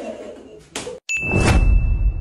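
A ringing tone dies away, then a short burst and a brief cut to silence. It gives way to a loud outro sound effect: one held high ding over a deep rumble.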